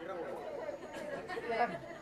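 Faint chatter of several audience voices murmuring.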